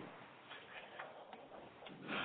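Near silence on a conference-call telephone line, broken by a few faint, irregularly spaced clicks.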